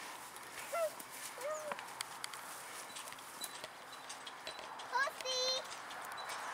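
Light, irregular clops of pony hooves under faint voices, with a high-pitched rising call about five seconds in.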